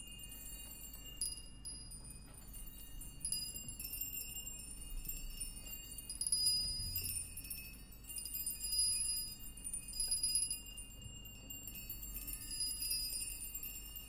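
Quiet passage of high, tinkling chimes and small metal percussion: many light, scattered strikes over a held high ringing tone, with only a faint low rumble beneath, in a free-improvised jazz piece.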